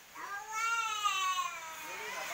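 A cat meowing once: a long drawn-out call, about a second and a half, that rises then falls in pitch with a slight waver.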